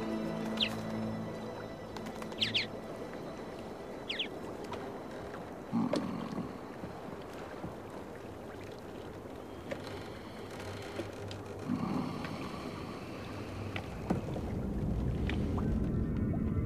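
Film soundtrack of soft, sustained ambient music. Three short, high, falling squeaks come in the first four seconds, and low whooshes come about six and twelve seconds in. A low rumble builds near the end.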